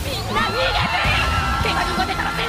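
Several anime characters shouting and screaming in panic, voiced by actors, over background music. A steady high tone is held underneath from about a third of a second in.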